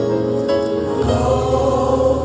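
Choir music in a gospel style: voices hold sustained chords over a steady bass, and the chord changes about a second in.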